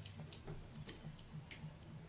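Faint, irregular crisp clicks, a few a second, from chewing crunchy raw green mango.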